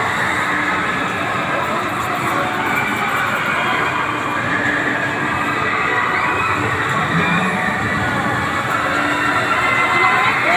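Rotating rocket-car amusement ride in motion: a steady mechanical rumble with a faint, wavering whine, mixed with the noise of the park around it.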